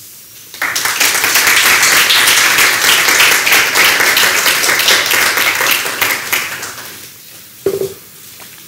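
Audience applauding at the end of a lecture. The clapping starts about half a second in and fades out over the last couple of seconds.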